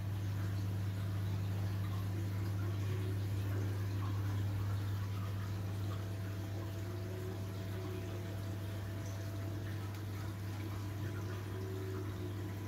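Steady low hum with water running underneath: a reef aquarium's pumps and circulating water.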